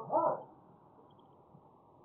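An owl hooting: two short calls close together right at the start, then only a faint steady hiss.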